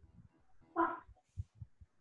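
A dog barking once, briefly, about a second in, followed by a few faint low knocks.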